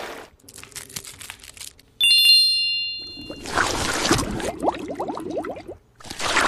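Faint wet crackles of a thick clay mask being pressed on skin. About two seconds in comes a sudden bright chime that rings and fades. Then there is loud wet foamy squelching and fizzing as a lather is worked over the face.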